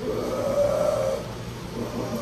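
A person's low, drawn-out vocal sound, held for about a second at the start and then fading off, with no clear words.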